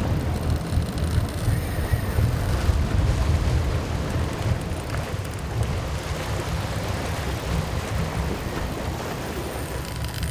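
Wind buffeting the microphone over the steady noise of a boat's engine and the sea, with no clear tone or strike standing out.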